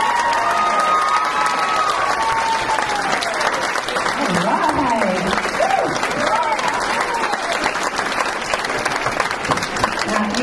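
Audience applauding steadily, with voices calling out over the clapping.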